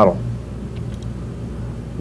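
A man's voice finishes a word, then a steady low electrical hum with faint background noise.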